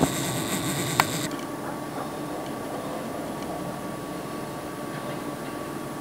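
Steady background noise, with a brief high whirring and a sharp click in the first second or so.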